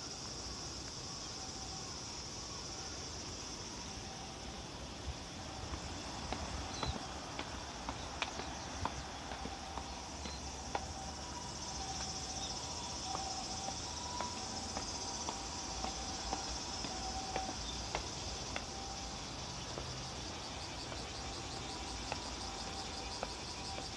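Insects calling in a steady, high, even chorus, with light footsteps tapping on tiled stairs from about five seconds in.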